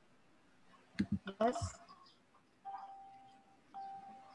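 A short spoken "yes" over a video-call line, then a steady mid-pitched tone held for about a second, breaking briefly and starting again near the end.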